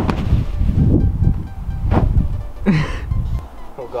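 A thump at the very start as a person lands on a large bean bag, over a heavy low rumble that cuts off abruptly about three and a half seconds in. A second sharp knock comes about two seconds in.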